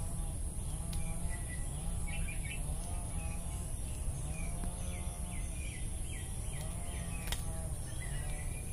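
A bird chirping in a quick run of short calls through the middle, over a steady low rumble and a high, even insect whine, with one sharp click near the end.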